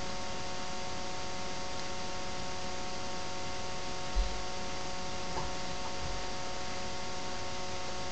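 Steady electrical hum and hiss with several fixed whining tones, with a single brief low thump a little past halfway and a faint click soon after.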